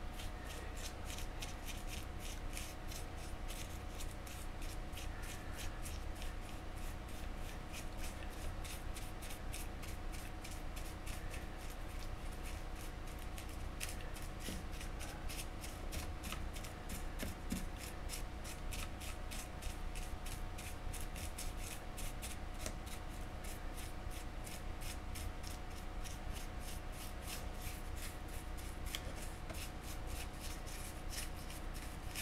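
Paintbrush stroking and dabbing paint onto a sculpted model tree close to the microphone: a continuous run of short, soft strokes, about three or four a second, over a faint steady hum.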